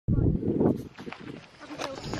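Wind buffeting the microphone: a loud gust in the first second, then weaker rumbling.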